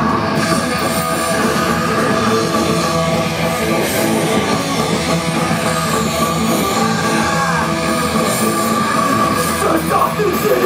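Hardcore punk band playing loud and steadily through the whole stretch: bass guitar and drum kit, with no vocals for most of it.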